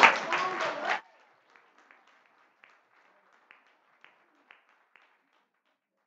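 Small audience laughing and applauding. The clapping stops abruptly about a second in, leaving a few faint scattered claps that die away.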